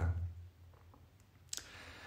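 The tail of a man's speech, then a quiet pause broken by a single sharp click about one and a half seconds in.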